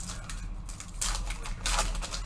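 Foil wrapper of a hockey card pack crinkling as it is ripped open by hand, in a few short crackling bursts about a second in and near the end.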